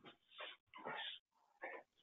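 Three short, faint animal sounds in a quiet pause.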